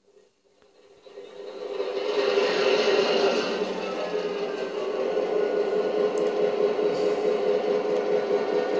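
USA Trains G scale NYC GP9 locomotive running in place on Bachmann roller stands: its motors and gearing spin up over the first two seconds as the throttle is opened, then hold a steady whirring hum.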